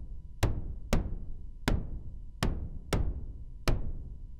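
Pink noise from an SSF Quantum Rainbow 2 module struck through the slow-decay channel of a low pass gate, playing six drum hits in an uneven pattern. Each hit has a sharp full-range attack whose highs fade first, leaving a low rumble: a thunder-sheet-like noise kick drum that still carries a fair amount of strike tone.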